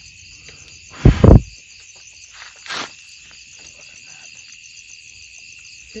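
Night insect chorus, a steady high trilling with a fast pulse. About a second in there is one loud, brief, low rumbling thump, then a short softer rustle a little before three seconds.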